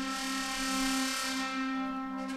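Symphonic wind band holding sustained chords, with a high shimmering wash that is bright at the start and fades out by about a second and a half in.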